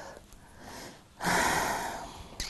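A single loud breath, close to a lapel microphone, about a second in and lasting under a second, with no words.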